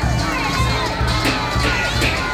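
Crowd of race spectators shouting and cheering, many voices calling at once, over a steady low beat of about three pulses a second.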